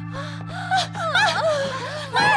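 A woman's distressed gasps and wordless cries, over a sustained low drone of background music.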